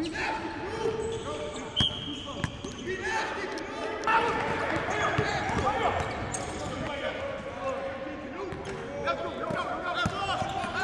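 Basketballs bouncing on a hardwood court during practice drills, a run of sharp, irregular thuds, with players' voices calling out over them.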